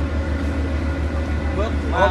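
A steady low engine drone with people's voices talking over it.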